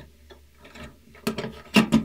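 Stainless steel enclosure cover being lowered and set onto its box: a few light metal knocks and scrapes, the two loudest in the second half.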